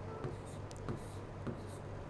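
Pen strokes on a digital writing board as arrows are drawn: a few quiet ticks and scrapes of the pen against the board's surface.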